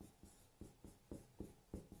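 Faint taps and strokes of a pen writing Chinese characters on a display screen, about three strokes a second.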